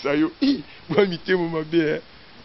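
A man's voice speaking, with nothing else to be heard.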